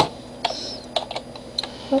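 Computer keyboard keys clicking as hotkeys are pressed, about five separate keystrokes spread across two seconds. The last one, near the end, is a mistaken press of the 3 key.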